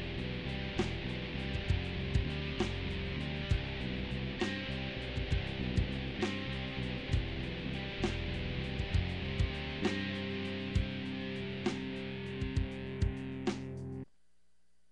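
Electric bass guitar played over a recorded track with a steady beat of sharp hits; the music cuts off suddenly at the end.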